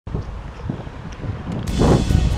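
Wind buffeting the camera's microphone: a low rumbling noise that grows louder near the end.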